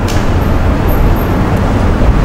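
Steady low rumbling background noise with no voice, loud and even throughout.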